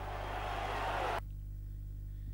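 Crowd noise in a basketball arena, a dense wash of many voices, that cuts off abruptly about a second in, leaving only a steady low hum.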